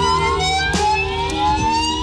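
Rock band's noisy instrumental passage: a siren-like effects tone glides slowly upward over a steady low drone, with a few drum hits.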